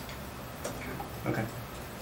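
A few faint, irregular clicks over quiet room tone, with a brief spoken "okay".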